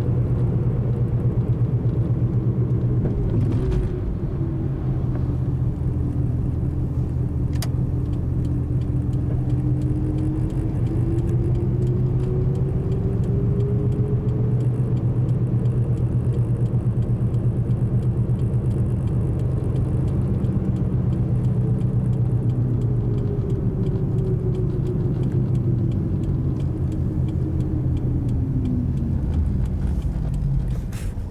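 Car engine and road noise heard from inside the cabin while driving at speed, a steady low hum with a tone that slowly wanders in pitch. Near the end the tone sinks as the car slows.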